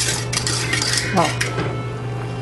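Metal wire whisk scraping and clinking rapidly against a metal saucepan while stirring a thick egg-yolk and condensed-milk custard that has cooked to the point of pulling away from the pan. The strokes ease off in the last half second.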